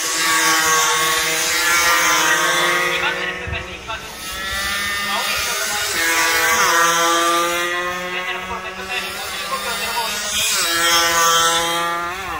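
Racing motorcycle engines revving hard as several bikes come through the corner one after another. The pitch climbs as they accelerate and falls as each one passes, most clearly about six and ten seconds in.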